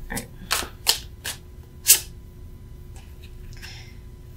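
A tarot deck being shuffled by hand: about five sharp card snaps in the first two seconds, the loudest near two seconds in, then faint card rustling near the end.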